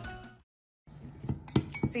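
Background music fading out, a brief gap of silence, then a metal spoon clinking and scraping against the inside of a ceramic mug as it mixes powder with oil.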